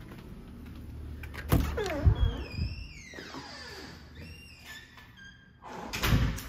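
A house's front door being opened: a sharp thunk about a second and a half in, heavier knocks half a second later, then high tones that glide downward and then hold for a moment.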